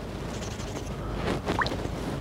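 A damascus knife blade being scrubbed with steel wool over a tub of ferric chloride etchant, a steady rubbing with liquid sloshing, and a brief rising squeak about one and a half seconds in.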